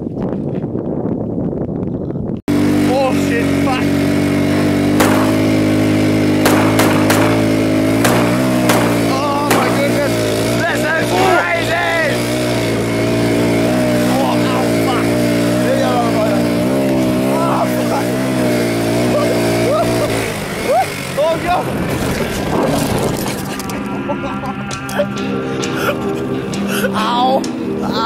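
A small quad bike's engine running with a steady buzz, its pitch wavering up and down as the throttle is worked, with voices calling out over it.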